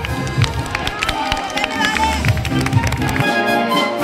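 Music with scattered hand clapping, then, about three seconds in, a cut to a wind band playing, brass and clarinets held on sustained notes.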